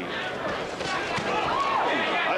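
Boxing arena crowd noise: a steady mass of voices with indistinct shouts rising out of it.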